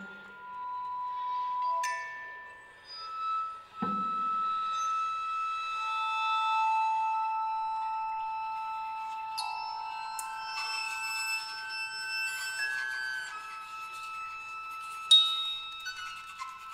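Contemporary chamber music for piccolo, toy piano, violin, viola, cello and percussion: sparse, long held high tones with struck notes ringing over them. There is a brief low thud about four seconds in, and a sharp struck accent near the end.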